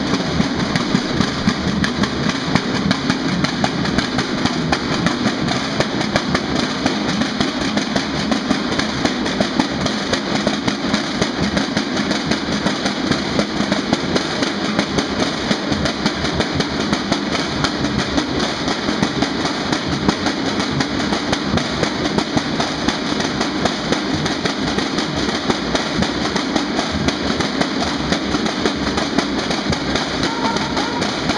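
A group of marching snare drums played with sticks in a fast, unbroken cadence of dense strokes, close to a continuous roll.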